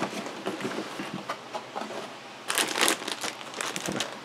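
Crinkling of the plastic bags around a model kit's runners as they are handled and lifted out of the cardboard kit box, with scattered rustles and a louder burst of crinkling about two and a half seconds in.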